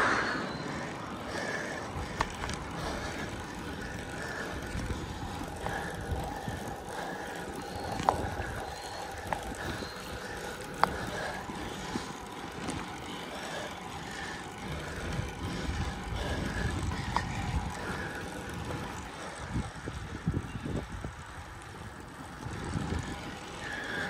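Road bike being ridden uphill: a steady rolling noise of tyres over rough, cracked asphalt, with a few sharp clicks scattered through it.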